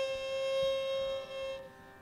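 A single steady drone note with a stack of overtones, held without wavering and fading out about one and a half seconds in, leaving a brief near-quiet gap between phrases of a Carnatic-style devotional song.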